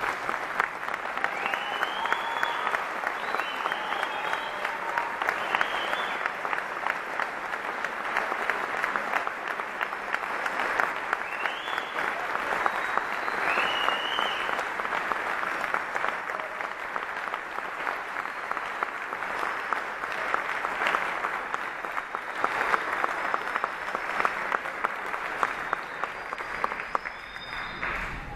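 Audience applauding steadily for the standing seniors, with a few high cheers rising above the clapping in the first half.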